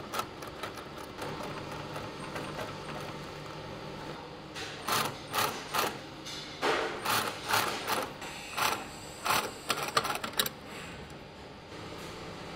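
Industrial sewing machine stitching the upper of a roller skate boot. It runs quietly at first, then from about four seconds in it sews in a series of short loud spurts, stopping and starting as the upper is turned under the needle.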